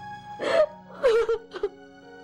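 A woman sobbing: three short crying gasps, the first about half a second in and the loudest, over steady soft background music.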